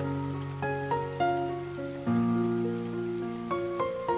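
Solo piano playing a slow, gentle melody over low chords, struck at the start and again about two seconds in, with a steady rain sound laid underneath.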